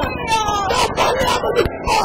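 Several voices shouting and crying out over one another, with long cries that slide up and down in pitch.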